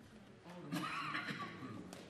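Low murmur of members' conversation across a large debating chamber, with one brief, louder voice rising above it about a second in.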